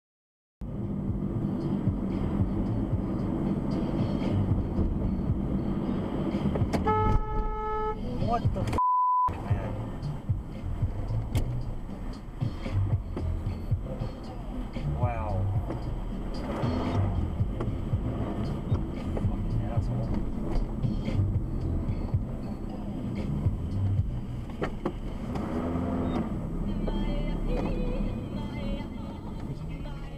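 Steady road noise heard from inside a moving car, with a car horn honking for about a second around seven seconds in, then a short single-tone censor bleep.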